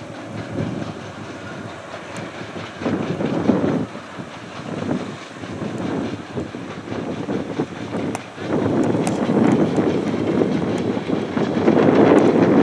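Mallet 403, a metre-gauge 030+030 Mallet steam locomotive, working its train along the line, heard from a distance: uneven swells of exhaust and rolling noise from the locomotive and coaches, growing louder in the last few seconds.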